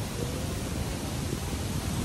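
Breeze blowing across a handheld phone's microphone: a steady rushing noise with an uneven low rumble.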